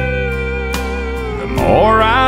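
Pedal steel guitar playing long held notes in a country band arrangement, with a pronounced sliding bend near the end, over a steady drum beat.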